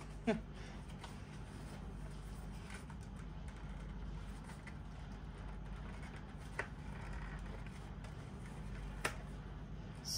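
Faint off-camera handling of a cardboard cosmetics pack: soft rustling with two small sharp clicks, about six and a half and nine seconds in, over a steady low hum. A brief murmured voice sound right at the start.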